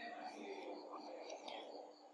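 Faint background noise: a soft, even hiss with a faint steady low hum.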